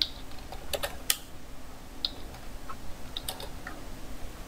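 Computer keyboard typing: scattered, irregularly spaced key clicks as short commands are typed.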